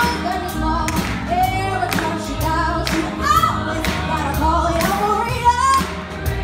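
Live band music: singing over a drum kit, electric guitar and bass, with a steady drum beat.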